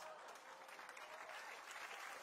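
Faint studio audience applause.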